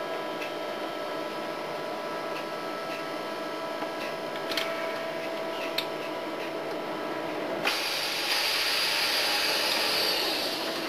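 Steady drone of a tugboat's machinery with a high whine, heard from inside the wheelhouse. Near the end a loud hiss cuts in suddenly and keeps going.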